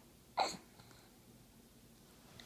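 A baby hiccups once, a single short sharp 'hic' about half a second in.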